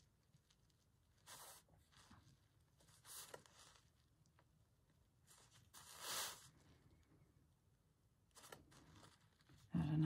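Faint scratching of a pen tracing a design onto fabric, in a few short strokes, the longest about six seconds in.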